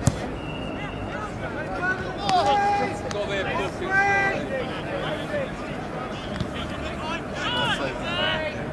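Footballers shouting and calling to each other across an open pitch, a string of short, distant shouts. A single sharp knock sounds right at the start.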